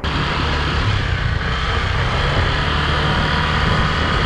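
Motor scooter riding along a street: steady engine hum under a continuous rush of road and wind noise.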